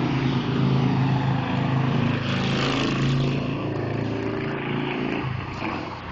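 A motor vehicle's engine humming steadily, with a rush of hiss swelling in the middle, fading out near the end.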